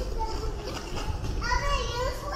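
Young children at play, with a small child's high-pitched voice sounding a wordless, sliding call about one and a half seconds in, over a low background rumble.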